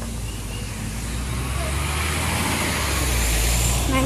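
Road traffic: a motor vehicle's engine runs with a steady low hum, growing louder over the last two seconds as it comes closer.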